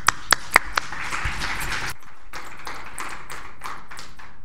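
Audience applause after a speaker's introduction: a few loud, sharp claps at first, then many hands clapping together in a spread-out patter that thins out in the second half.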